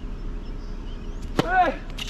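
A tennis ball struck hard with a racket on a serve: one sharp pop about one and a half seconds in, followed at once by a short high cry that rises and falls.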